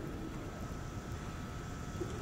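Room tone of the recording: a steady low hiss with a faint, steady high tone running through it, and no distinct sound event.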